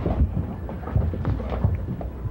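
Low rumble with irregular knocks and shuffling, as of a courtroom crowd getting to its feet, in an old radio-drama recording.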